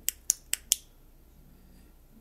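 Four quick sharp clicks of the Semdisan A100 tactical flashlight's tail switch, about five a second, as it is pressed repeatedly to cycle through its light modes.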